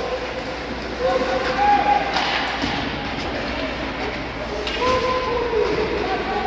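Ice hockey game sound in an arena: spectators' shouts and drawn-out calls over the scrape of skates and clack of sticks on the ice, with a couple of sharper scrapes about two and five seconds in.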